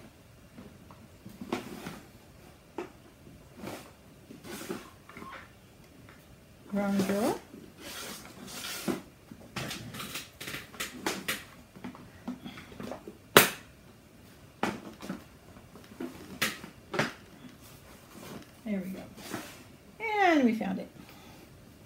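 Rummaging in a drawer for supplies: scattered small knocks, clicks and rattles of things being moved about, with one sharp click louder than the rest a little past the middle.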